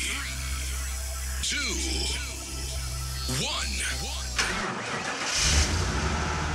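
Produced intro soundtrack: a steady low drone with swooping pitch glides, a sudden hit about four and a half seconds in, then music coming in fuller near the end.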